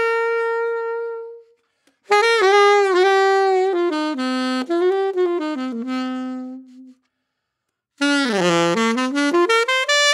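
Selmer Paris Reference 54 alto saxophone played through a cheap stock plastic mouthpiece with a close tip opening: a held note that dies away about a second in, then two melodic phrases with short pauses between them, the second beginning with a swoop down in pitch and back up. The tone is thin, weedy and boxy.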